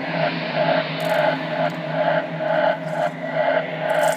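Electronic dance track in a drumless breakdown: sustained synth chords under a pulsing, echoing synth figure that repeats at an even pace.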